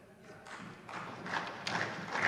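Scattered applause in a parliament chamber, starting about a second in and building toward the end.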